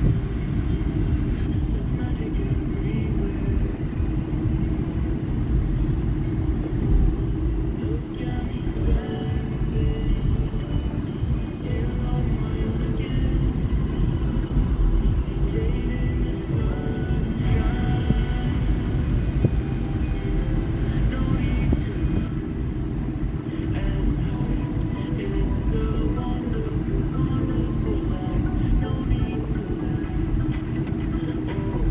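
Inside a moving car: a steady low rumble of road and engine noise, with music and a voice playing over it.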